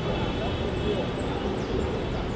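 City street ambience in a small park: a steady low rumble of traffic with faint, indistinct voices in the distance.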